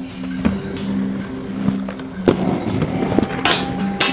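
Inline skate wheels rolling on concrete with a few sharp clacks of the skates striking the ground and a ledge, over music with a steady low bass line.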